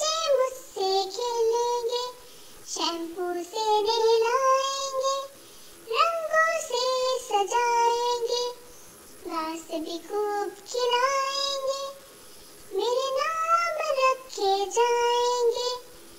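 A child singing an Urdu children's poem about a pet goat, in short melodic phrases with brief pauses between them.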